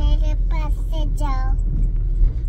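A young girl's high voice in four or five short, pitch-curving syllables, fading out after about a second and a half, over the steady low rumble of a car cabin.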